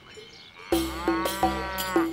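A cow mooing once, starting under a second in, its call rising and then falling in pitch, over several ringing clanks from cowbells.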